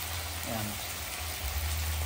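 Meat, onions and tomatoes sizzling steadily in a steel pot on the stove, a soft even hiss, with a steady low hum underneath.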